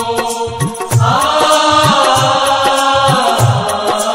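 Urdu prayer song: a voice sings a long held "aa" that rises about a second in and is held for about two seconds. Under it, drums beat about twice a second with a fast high ticking percussion.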